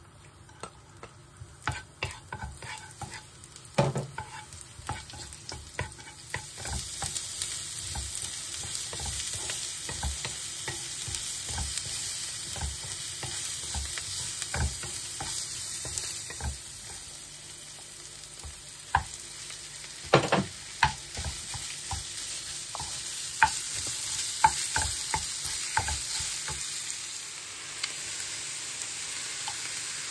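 Chopped onion, garlic and ground pork frying in oil in a frying pan. A steady sizzle sets in about seven seconds in. Before that there are scattered taps, and throughout a wooden spatula stirs and knocks against the pan, loudest around two-thirds of the way through.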